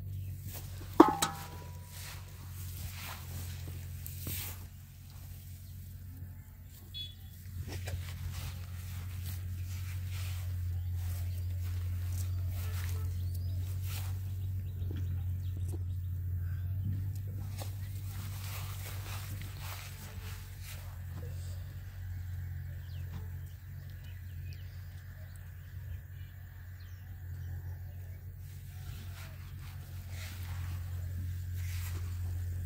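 Hands unhooking a caught catfish and baiting a fishing hook: scattered clicks and rustles, with a sharp click and a brief squeak about a second in, over a steady low rumble.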